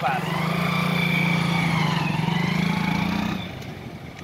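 Small single-cylinder commuter motorcycle, a Hero Splendor, pulling away and running steadily for about three seconds, then dropping away as it rides off.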